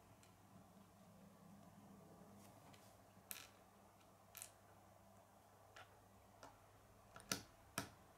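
Faint, scattered clicks of small plastic LEGO pieces being handled on a wooden tabletop, with two sharper clicks near the end as a small white piece assembly is pressed down onto red round pieces.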